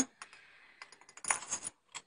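Scattered light clicks and taps of porcelain ornaments being handled on a wire display tree, with a short cluster of them a little past the middle.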